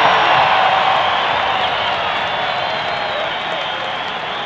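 Stadium crowd cheering and applauding, loudest at the start and slowly dying down.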